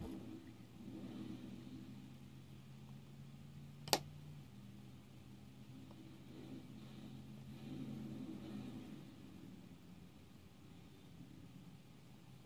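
Faint soft brushing of a dense foundation brush buffing makeup into facial skin, over a low steady hum that fades out near the end. One sharp click about four seconds in.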